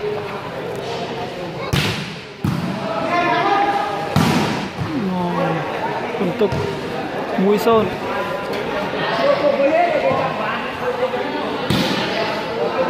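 A volleyball being struck by hand: a few sharp slaps, two close together about two seconds in, another at about four seconds and one near the end, echoing in a large hall. Players and spectators call out between the hits.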